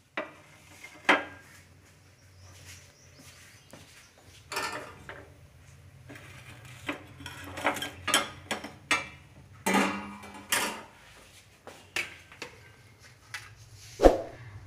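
Scattered clinks and knocks of dishes being handled and set down: a glass bowl and brass plates, with a low steady hum underneath.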